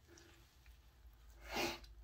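Faint room tone, then a short, sharp breath drawn in through the nose near the end.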